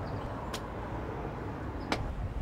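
Outdoor urban background noise: a steady low rumble, with two short clicks, one about half a second in and one near the end.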